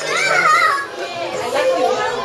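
Children's voices: one child's high call rises and falls in the first second, then more chatter among the children.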